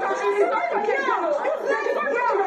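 Several people talking over one another at once, the crowded chatter of a heated argument and scuffle.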